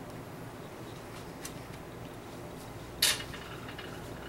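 A sharp clack of a hard object knocking on a hard surface about three seconds in, with a brief ringing after it, preceded by a couple of faint ticks. A steady low background hum runs underneath.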